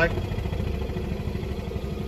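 Hill-Rom Vest 205 airway-clearance air pulse generator running, driving rapid, even pulses of air into the chest vest over a steady hum, its oscillation frequency being stepped down from 13 Hz to 11 Hz.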